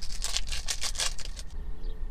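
Foil wrapper of a Pokémon booster pack crinkling and tearing as it is ripped open, a quick run of crackles in the first second that then thins out.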